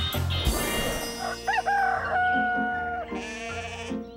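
Cartoon rooster crowing: a cock-a-doodle-doo of short rising notes ending in one long held note. The background music stops about half a second in, with a brief rush of noise.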